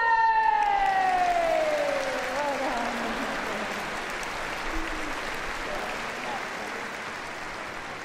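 Audience applauding: the clapping starts suddenly and slowly dies away. Over the first two or three seconds a long pitched tone slides steadily down.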